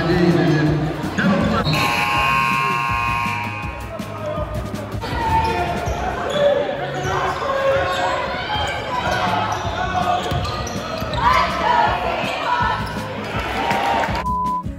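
A basketball being dribbled on a hardwood court in a large gym, with repeated bounces over crowd voices and chatter. A pitched sound is held for about two seconds near the start.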